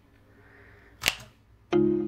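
A single sharp click about a second in, typical of a computer mouse click starting playback, then music starts near the end with a loud, held note.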